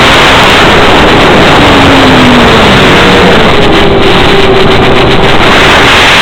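Loud, steady hiss of radio static on the audio channel of an analog FPV video link, with a faint hum underneath from the model plane's motor, gliding down and then holding a higher pitch.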